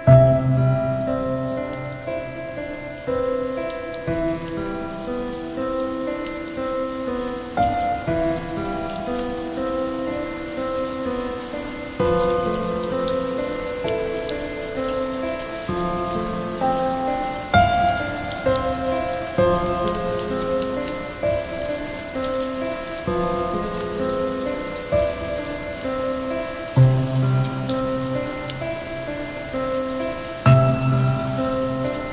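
Slow, calm piano music playing over a recording of steady rain, the fine patter of raindrops running under the notes.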